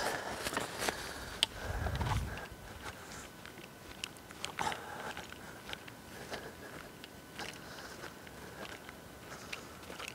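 Footsteps through rough grass with scattered small crackles and snaps of twigs and branches as someone walks in under low conifer branches. There is a brief low rumble about two seconds in.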